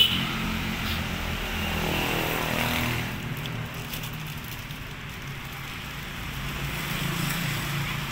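A vehicle engine running steadily, a low hum that is a little louder in the first three seconds, eases off, and rises again near the end.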